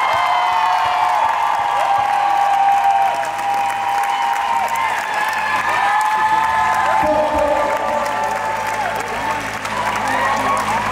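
Audience applauding and cheering, with many long high-pitched screams and whoops over the clapping.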